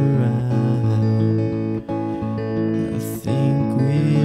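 Guitar playing slow, sustained chords in an instrumental passage of a mellow ballad, with two brief drops in the sound partway through.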